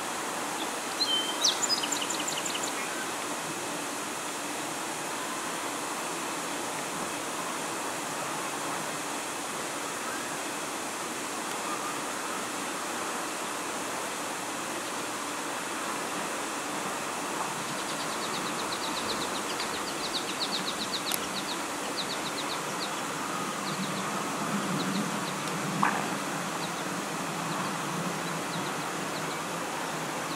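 Steady outdoor hiss with birds chirping: a few high chirps about a second in, and a fast high trill about two-thirds of the way through. There is a short sharp sound near the end.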